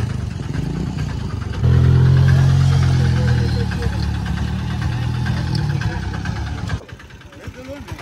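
Petrol dispenser's pump motor running with a steady low hum while fuel is delivered, starting about a second and a half in and cutting off suddenly near the end, as a preset 300-rupee fill is reached.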